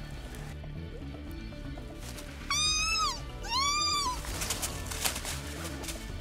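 Elk calf bleating twice in quick succession, two high, clear calls that each rise and then fall in pitch, over background music.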